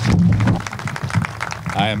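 A small crowd applauding, with many separate hand claps; a man's voice starts up near the end.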